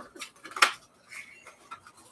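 Paper and card being handled: short rustles and crackles as folded sheet-music paper is opened, with one sharp paper snap a little after half a second in.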